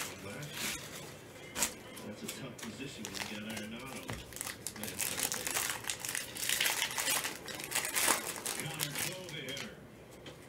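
Plastic foil wrapper of a Panini Prizm football hobby pack crinkling and tearing as gloved hands rip it open, a quick run of sharp crackles that is loudest and densest from about five to eight seconds in.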